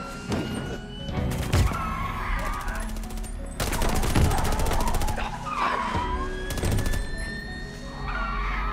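Automatic gunfire in three rapid bursts, the longest about a second and a half, over film-score music with a held tone slowly rising in pitch.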